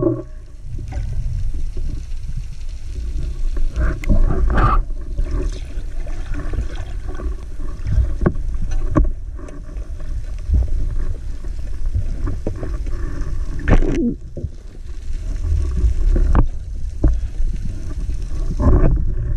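Water heard underwater: a steady low rumble of moving water with scattered sharp clicks and a couple of brief brighter swells.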